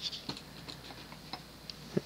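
Modern Fan Co Cirrus Hugger ceiling fan's General Electric stack motor running: a faint steady hum with a few light, irregular ticks.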